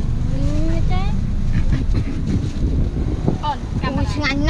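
Low, steady rumble of a Toyota SUV's engine and road noise heard inside the cabin. A voice speaks briefly in the first second and again near the end.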